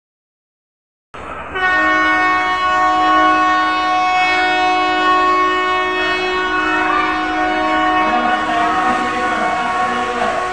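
Train horn sounding one long, steady blast of about eight seconds, after a second of dead silence, fading near the end.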